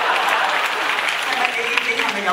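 Audience applauding steadily, with voices mixed into the clapping.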